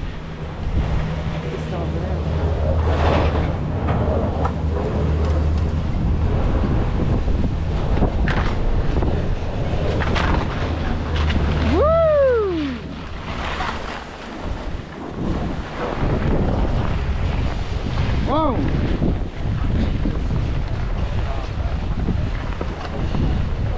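Skis sliding and scraping over packed, tracked snow, with wind buffeting the microphone, as a skier unloads from a Doppelmayr detachable chairlift and skis away from the top terminal. A steady low hum from the lift terminal machinery runs underneath and dies away about 13 seconds in.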